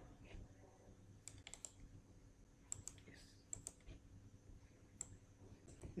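Faint clicks of a computer mouse and keyboard, several short pairs of clicks spread a second or so apart.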